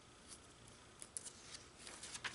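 A glossy magazine page being lifted and turned by hand: faint, crisp paper crackles, mostly a few short ones from about a second in.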